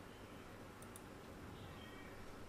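A computer mouse clicking twice, faintly, a little under a second in, over a faint low hum of room tone.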